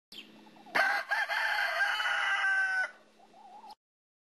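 A rooster crowing once, a single long call of about two seconds that starts under a second in, over a faint steady hum.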